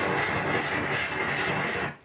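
Vinyl record playing on a turntable: a loud, steady rushing noise from the record, with no voice or tune in it, that cuts off abruptly near the end.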